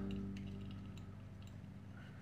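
Faint light clicks of a clear plastic multimeter case being handled as its top cover is worked loose, under a held chord of background music that slowly fades.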